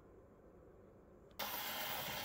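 Near silence, then about one and a half seconds in a click as the needle of an acoustic Victrola's reproducer sets down on a spinning 78 rpm shellac record, followed by steady surface hiss from the lead-in groove before the music starts.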